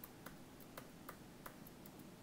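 Faint, sharp clicks, about half a dozen at irregular spacing, over near-silent room tone, from the desk equipment used to draw and edit the on-screen diagram.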